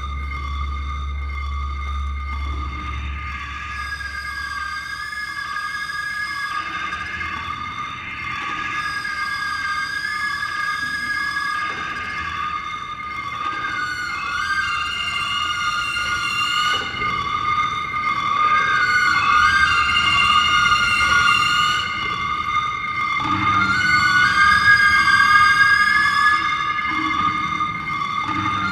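Daxophone bowed in slow, sliding and wavering pitched phrases over a sustained high drone, growing louder toward the end, in an echoing underground brick vault. A low hum fades out in the first few seconds.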